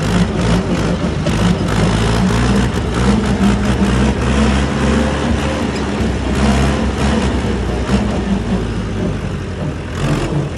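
Massey Ferguson 290 tractor's four-cylinder diesel engine running steadily while driving a PTO-powered grass topper, over a constant clatter of rattles and knocks.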